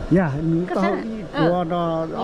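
An adult voice in drawn-out, sliding, sing-song tones with no clear words, ending in one long held sound.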